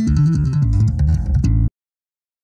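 Electric bass guitar playing a fingered bass line, a quick run of low plucked notes with light string clicks, cutting off suddenly near the end.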